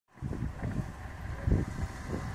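Wind buffeting the phone's microphone: an uneven low rumble that comes in gusts, strongest about one and a half seconds in.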